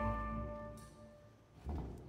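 Opera orchestra's chord dying away under a held low note, leaving the hall nearly quiet, then a short low thump near the end.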